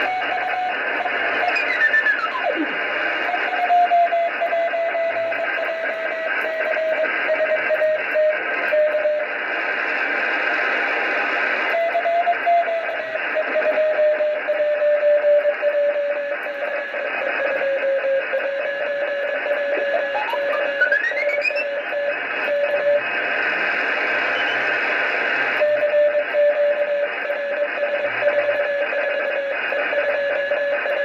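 Amateur radio receiver tuned to the RS-44 satellite downlink: steady hiss in the receiver's narrow passband with a CW tone near 600 Hz that drifts slowly lower in pitch. Two whistles glide through, one falling about two seconds in and one rising about twenty seconds in.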